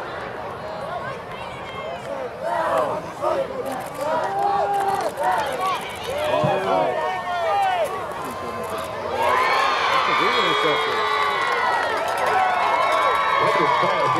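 Football crowd of many voices shouting and cheering a long run. The shouting grows louder and more sustained about nine seconds in, as the run nears the end zone.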